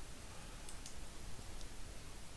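Faint computer mouse clicks, two close together a little under a second in and another later, over low room hiss.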